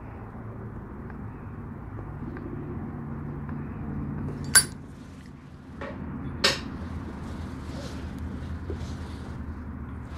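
A tobacco pipe being lit with a torch lighter: a steady low rush of the jet flame and puffing draws on the pipe for about four and a half seconds, ending in a sharp click. Two more sharp clicks follow about two seconds later, then soft breathy exhaling.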